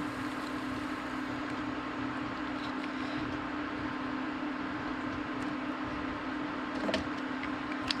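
Induction cooktop running with a steady hum and hiss under a pot of grape juice at a full boil, with a few faint clicks.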